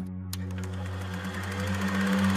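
A steady low drone with a fast, even ticking whir over it, which starts with a click just after the voice stops: a transition sound effect.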